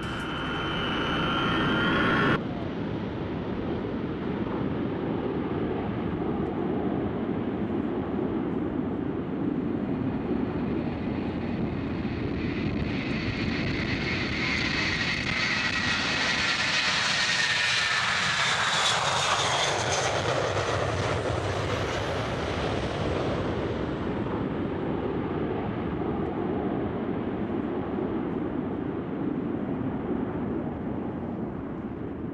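Jet engines of a Boeing 707-138 at takeoff power. The first couple of seconds are heard inside the cockpit. After that comes a loud outside roar, with a whine that rises as the airliner nears, slides down in pitch as it passes a little past halfway, and then settles into a steady rumble.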